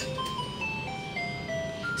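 Electronic beeps of a fruit slot machine as its running light slows to a stop: a series of single tones falling in pitch, each step held a little longer than the last.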